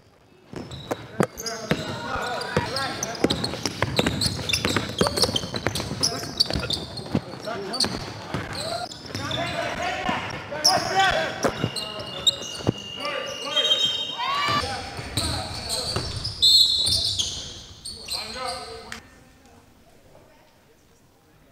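Basketball game in a gym: the ball bouncing on the hardwood court amid indistinct shouting from players, echoing in the hall, with a few short high squeals.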